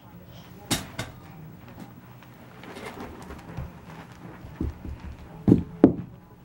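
A few short knocks and thumps over quiet room sound: one just under a second in, then several close together near the end.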